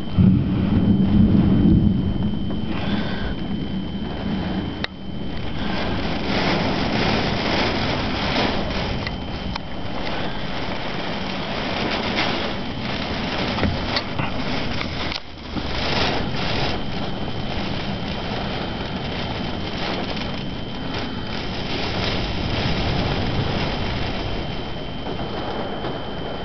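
Thunderstorm wind and rain beating on window glass, a steady rushing hiss, with a heavier low rumble in the first couple of seconds.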